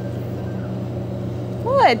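A steady low hum, with a brief voice sliding up and then down in pitch near the end.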